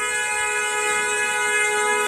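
A vehicle horn sounding one steady, unbroken blast that starts suddenly and cuts off abruptly.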